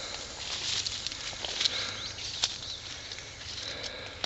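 Summer brush ambience: rustling and a few sharp clicks of plants being brushed or stepped through, with a few short high chirps about halfway and a steady high insect trill returning near the end.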